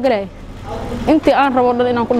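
A woman's voice on long, held pitches, like chanting or singing, stops briefly in the first second. In that gap a low rumble is heard, and then the voice comes back.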